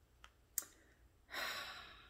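Two faint clicks as tarot cards are handled, then a woman's soft, breathy sigh just past a second in that fades out over about half a second.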